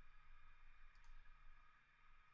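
Two quick computer mouse clicks, close together about a second in, over faint hiss at near-silence level.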